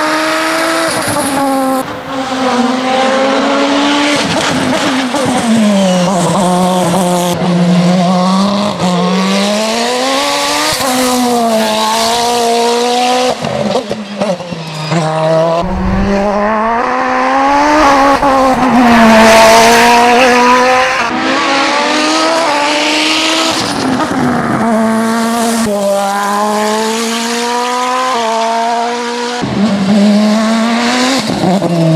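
Osella PA 2000 Turbo race car's turbocharged engine at racing revs, its pitch climbing and dropping again and again through gear changes and braking for bends. A loud hiss swells up near the middle, the loudest moment.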